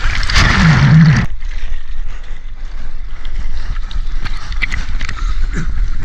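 Whitewash of a breaking wave churning over and around a housed action camera: a loud rush of water for about the first second, then lighter sloshing and splashing of water around the surfboard, with small scattered splashes.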